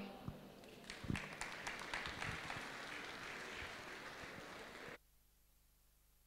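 Audience applauding faintly, picking up about a second in and cut off suddenly near the end.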